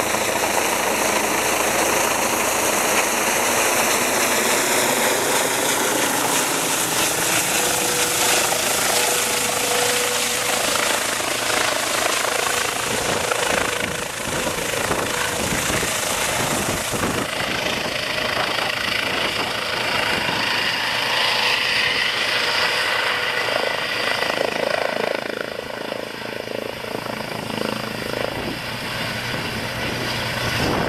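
Air ambulance helicopter with a ducted fenestron tail rotor flying overhead, then descending and setting down: a steady turbine whine and rotor noise. Midway, as it comes in low, rotor wash buffets the microphone.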